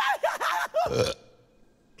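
A high cartoon creature voice babbling in swooping, wordless sounds, then a short burp about a second in, followed by a near-silent pause.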